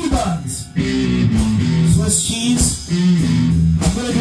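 Rock band music led by guitar, playing held low notes in phrases with short breaks between them.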